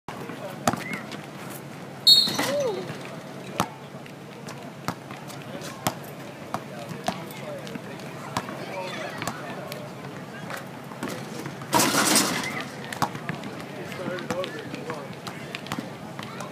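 A basketball being dribbled on asphalt, a sharp bounce roughly every second, with faint voices around it and two louder bursts of noise, one about two seconds in and one near twelve seconds.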